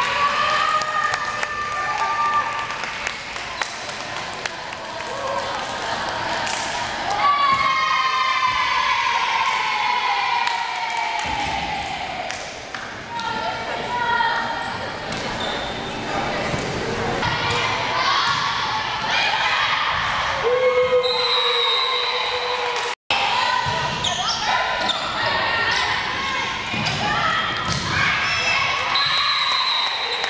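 Indoor volleyball match sounds: the ball being hit and bouncing on the hardwood floor, with players and spectators calling out and cheering, echoing around the gymnasium.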